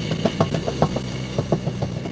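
Radio-drama sound effect of subterranean explosions and the ground trembling: a steady low rumble with irregular knocks and rattles over it.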